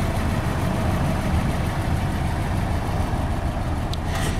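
Steady low rumble of a car engine idling, with no change in pitch or level.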